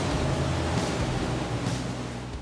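Twin Mercury 400 V10 outboards running at high speed on a power catamaran, a steady low engine hum under a rush of wind and water that slowly fades.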